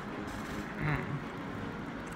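Steady low background hum of room noise, with a brief faint murmur of a voice about a second in.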